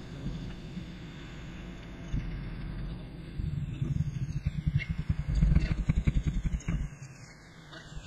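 A low rumble that grows louder and pulses quickly in the middle, then dies down near the end, with a sweeping filter effect passing over it.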